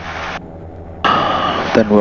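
Diamond DA42-VI's twin diesel engines running steadily during their cold warm-up, oil still below 50 degrees, heard as a low drone from inside the cockpit. A hiss drops out about half a second in and comes back about a second in, and a man's voice begins near the end.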